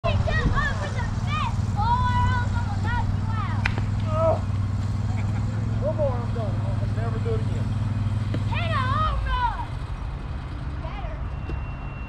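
Several voices calling out across an open field, over a steady low hum that stops about nine seconds in, with one sharp knock a little before four seconds in.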